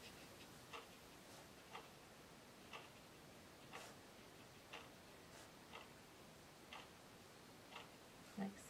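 Near silence: quiet room tone with a faint, regular tick about once a second.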